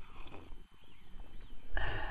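A man sipping hot water from a camp cup, then letting out a sustained, voiced "aah" of satisfaction starting near the end.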